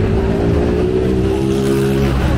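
A motor vehicle engine running close by, its pitch rising slightly as it speeds up, then cutting off near the end.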